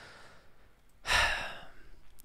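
A man breathes in faintly, then lets out a breathy sigh about a second in that fades away over most of a second.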